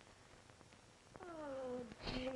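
Faint room tone, then about a second in a drawn-out wordless moan from a person waking, falling in pitch for under a second.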